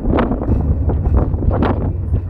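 Wind buffeting a phone's microphone: a heavy low rumble with gusty flares.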